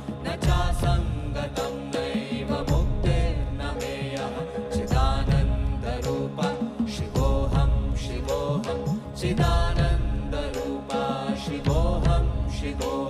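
A group of voices singing a devotional chant to live drum accompaniment, with a steady beat under the sung lines.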